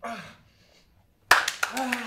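A short wordless vocal cry with falling pitch, then about a second later a sudden sharp smack followed by a quick run of knocks and slaps, with a held vocal sound under them, from physical action on a theatre stage.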